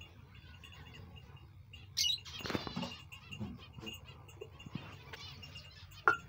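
Finches in a colony aviary, with wings fluttering and scattered soft chirps, and a louder flurry about two seconds in.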